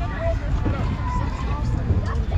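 Faint voices of people in the background over a steady low rumble.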